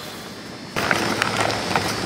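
A quiet background hum gives way, about three-quarters of a second in, to a sudden, steady rumbling and rattling noise with scattered clicks, like rolling or handling noise.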